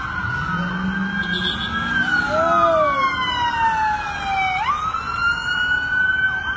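Police car sirens wailing as cruisers pass in pursuit: the main siren holds a high tone, slides slowly down in pitch for a couple of seconds, then sweeps quickly back up, with a second siren sounding alongside it.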